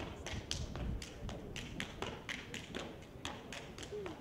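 Stepping: a performer's sharp hand claps and body slaps with foot stomps on concrete, in a quick steady rhythm of about four strikes a second.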